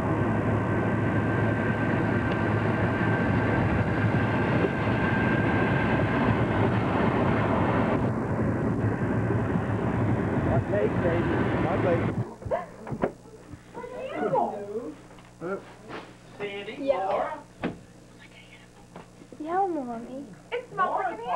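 A steady, loud rushing noise that cuts off suddenly about twelve seconds in. After it, in a quieter room, a cat meows several times, each call rising and falling in pitch.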